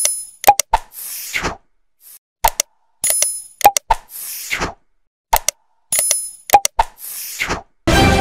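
Animated 'like and subscribe' end-card sound effects: sharp clicks, a bright chime, a short pop and a falling whoosh. The whole set plays three times, about three seconds apart, with silence between.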